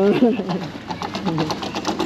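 Rollers of a playground roller slide clattering in a rapid, even rattle of about ten clicks a second as a child rides down over them. A short voice sounds at the very start.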